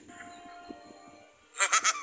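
A man's short, raspy snicker of about three quick pulses near the end, after a quiet stretch.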